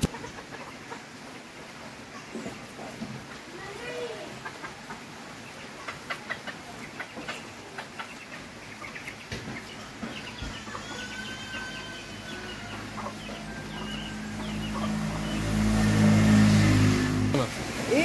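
Faint clicks of a knife cutting tomatoes over a stone mortar, with fowl clucking in the background. Near the end a louder, low, steady drone swells for a few seconds.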